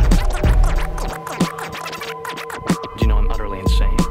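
Hip-hop beat with a DJ scratching records on a turntable, over repeated heavy kick-drum hits.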